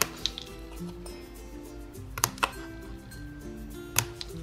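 Soft background music with a few sharp clicks of small scissors snipping cardstock: one shortly after the start and two close together about two seconds in.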